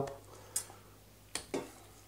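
A few light clicks and knocks of kitchen handling, about half a second in and then two close together near one and a half seconds in, as a knife and cut pieces of pig spleen are moved off a wooden chopping board into a stainless steel tray.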